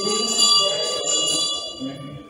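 Metal temple bell struck several times, its high ringing tone sustained between strikes and dying away near the end.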